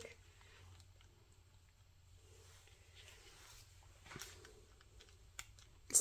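Faint handling noises: soft rustles and a few small clicks as wooden craft sticks press thin plastic film down into wet resin, with a slightly sharper click about four seconds in.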